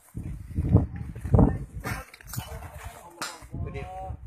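Men's voices calling out over loud low rumbling bursts on a phone microphone, the loudest a little under a second in and about a second and a half in; a short raised voice is heard near the end.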